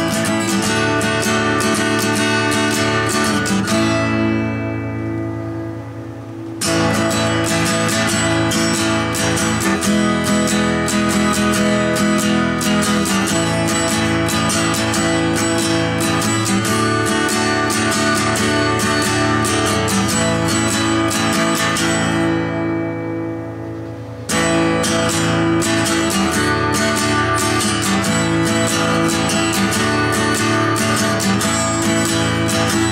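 Acoustic guitar strummed rhythmically through a chord progression, twice pausing on a chord that is left to ring and fade for about two seconds before the strumming starts again.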